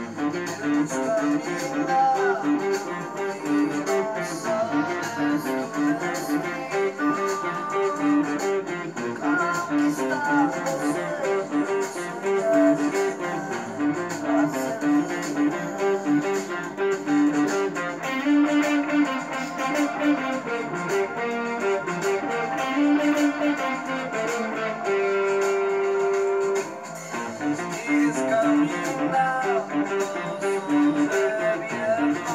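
Electric guitar, an ESP LTD EX-50 played through a Zoom 505 II effects pedal, picking a riff of short repeated notes, with one long held note a few seconds before the end.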